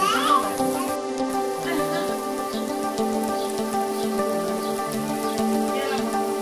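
Lamb chops sizzling and crackling on a charcoal grill, under steady background music.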